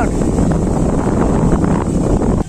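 Strong wind blowing across the microphone: a loud, steady rush of noise heaviest in the low end.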